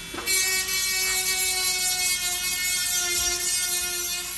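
Handheld rotary engraver with a small sharpening-stone bit running at speed, a steady high whine with several pitched tones, as it grinds the edge of a plastic plectrum. It comes up loud about a third of a second in.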